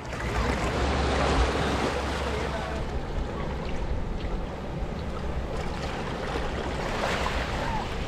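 Sea waves breaking gently on a rocky, sandy shore, a steady wash of noise, with wind rumbling on the microphone.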